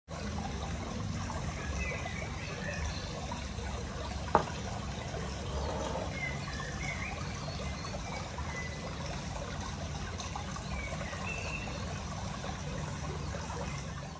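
Steady trickling water, with a few faint high chirps and one sharp click about four seconds in.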